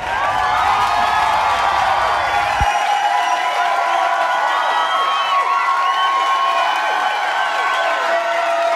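Several high-pitched voices calling out and cheering at once, overlapping one another. A low rumble under them cuts off suddenly near three seconds in.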